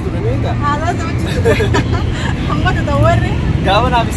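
Two people talking in conversation, over a steady low background rumble.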